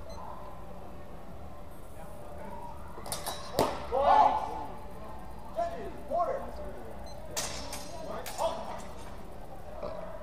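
Longsword blades clashing during a sparring exchange: a few sharp clacks about three seconds in and again about seven seconds in, each followed by short shouts.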